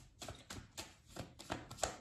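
A tarot deck being shuffled by hand: a quick, uneven run of card slaps and taps that grows louder toward the end.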